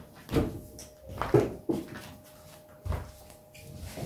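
Fabric baby wrap being pulled and tucked on the body: cloth handling noise with four or five soft, separate thumps spread over a few seconds.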